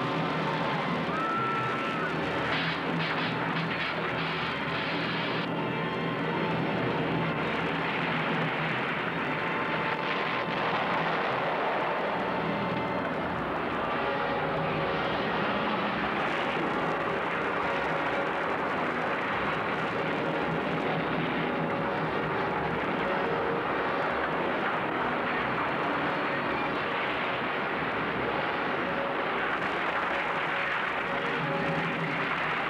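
Continuous loud rumbling roar of a film earthquake sound effect, even and unbroken throughout, with music mixed faintly underneath.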